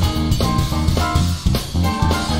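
Live jazz trio playing: an electric bass carries the groove over a drum kit.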